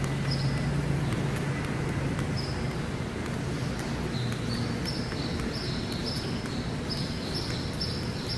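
Footsteps on a concrete floor over steady background hum and noise, with repeated short high-pitched chirps that come more often in the second half.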